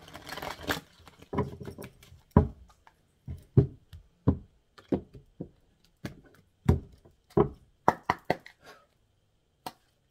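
A tarot deck being shuffled and handled on a tabletop: a short rustle of cards, then about a dozen dull knocks of the deck against the table at uneven intervals.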